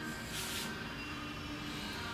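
Faint background music over a steady room hum, with a brief hiss about half a second in.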